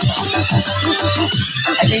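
Electronic hip-hop style music playing, with a deep repeating bass line and a steady beat.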